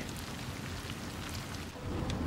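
Steady, even hiss with a faint low rumble beneath it: the background noise inside a moving car.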